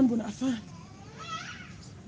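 A voice speaking a word or two at the start, then, about a second in, a faint high-pitched call that rises and bends, like a cat's meow in the background.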